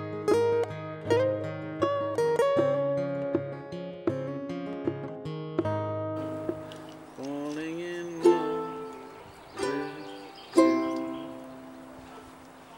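Ukulele played: a run of single plucked notes that each ring and fade, then a few strummed chords in the second half.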